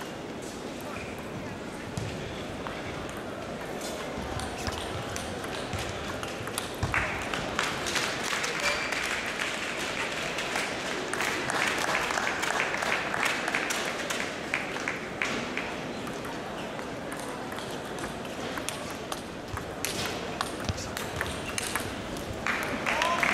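Table tennis ball clicking off bats and the table in rallies, a string of sharp irregular ticks that grows busier after the first few seconds, over a steady murmur of voices in a large hall.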